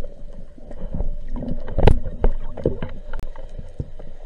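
Underwater sound picked up by a diver's action camera in its housing: a muffled water rumble with scattered knocks and bumps as the diver handles the speargun. The loudest is a sharp knock about two seconds in.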